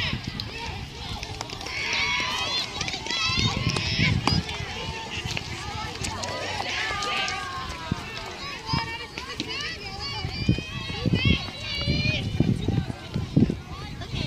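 Distant high-pitched girls' voices calling and cheering across a softball field, too far off for words to be made out, with low rumbling bursts on the microphone.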